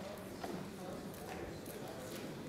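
Low murmur of many people talking quietly in a large chamber, with a few faint clicks.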